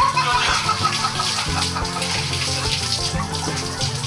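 A shower spraying water behind a closed door, a steady hiss, with background music underneath.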